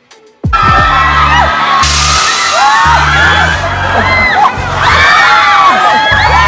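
Many amusement-ride riders screaming and shrieking together, their high cries rising and falling, over background music with a steady bass beat. The screams start suddenly about half a second in.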